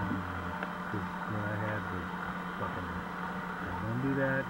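A man's voice, muffled and indistinct through a taped-over microphone, talking in short stretches over a steady low hum.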